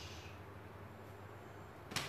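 Quiet room tone with a faint steady low hum, and one brief sharp click near the end.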